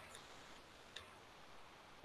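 Near silence: room tone, with two faint ticks, one just after the start and one about a second in.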